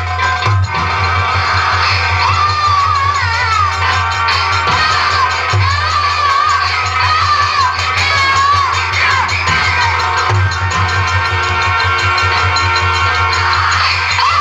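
Live nautanki band music: continuous drumming under a wavering, ornamented melody line, with crowd noise from the audience.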